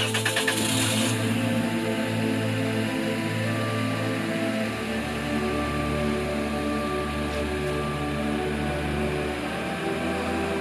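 Background film score of held synthesizer chords over a low bass note that drops about halfway through, opened by a bright hissing swell in the first second.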